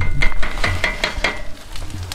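A metal utensil clinking and stirring in a cooking pan on a camp stove: quick ringing strikes about five a second, stopping after a second and a half.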